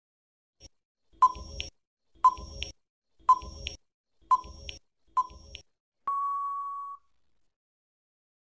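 Countdown timer sound effect: five short beeps about a second apart, then one longer steady beep that ends the count.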